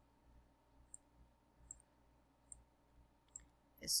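Faint, short clicks, about one a second, from a computer pointing device as digits are handwritten on screen.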